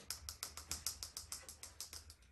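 Rapid light tapping, about nine taps a second, from the red plastic funnel being tapped and shaken in the balloon's neck to work baking soda down into the balloon.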